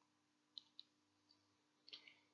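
Near silence with a few faint, short clicks spread through it.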